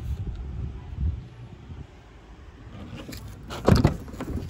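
Low handling rumble, then a short sharp clatter about three and a half seconds in as a car's rear door latch is worked and the door is opened.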